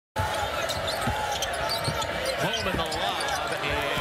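Basketball dribbled on a hardwood arena court, a few low thuds, over the steady crowd noise and voices of a game broadcast.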